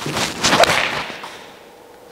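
A golf swing with an iron: a short swish of the club coming down, and a sharp crack as the clubface strikes the ball about half a second in.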